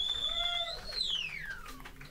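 High-pitched feedback whine from the stage guitar amplification, held steady, then lifting briefly and sliding down in pitch over about a second as it dies away.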